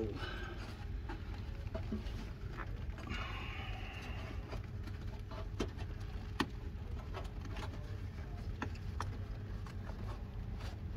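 Quiet hand-work on a fabric turbo heat blanket and its retaining spring and cable tie: scattered light clicks and a brief rustle, over a steady low hum.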